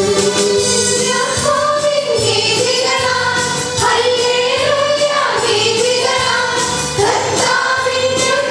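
A choir of women, religious sisters, singing a hymn together with instrumental accompaniment and a light, regular beat.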